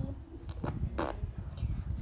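Slime being pressed in its plastic tub, making a short fart-like squelch about a second in, with a couple of softer squishes just before it.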